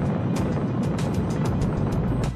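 Rocket engines at launch: a steady, deep roar with crackle, with music underneath.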